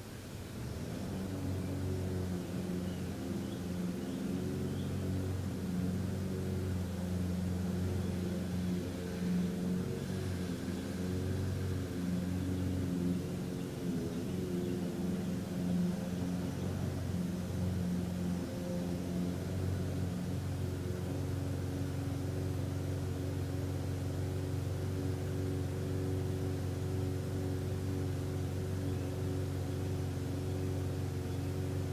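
A steady low droning hum with several pitched tones, swelling in about a second in. It wavers slightly in pitch, then holds steadier in the second half.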